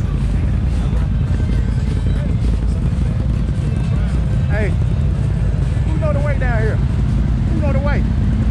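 Can-Am ATV engines running at low speed, a steady low rumble. Voices call out a few times in the second half.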